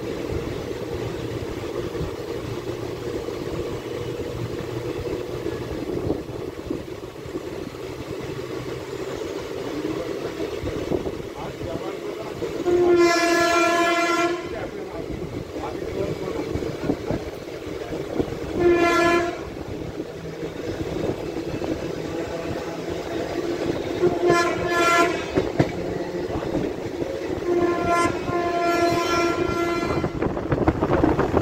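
Express train running at speed, its wheels clattering steadily over the rails. A locomotive horn sounds several times over it: a long blast a little before halfway, a short one a few seconds later, two short blasts, then a longer blast near the end.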